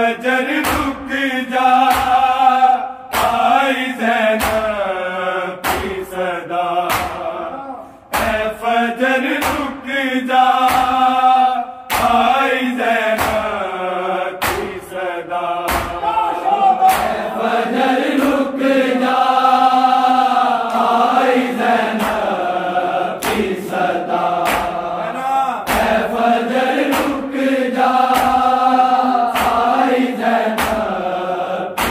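An Urdu noha (lament) sung by a group of male voices in unison, with the sharp rhythmic slaps of many open hands beating bare chests in matam keeping time. There is a brief pause in the singing about eight seconds in.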